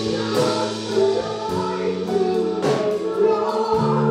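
Live gospel worship music: a group of singers on microphones singing together over held low accompaniment notes that change every second or two, with a few percussion hits that ring on.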